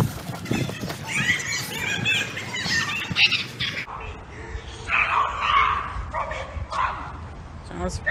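Distant yelling from a group of people outdoors, coming in several short, broken bursts.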